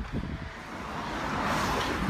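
Outdoor rushing noise of wind on the microphone and a passing vehicle, swelling gradually toward the end.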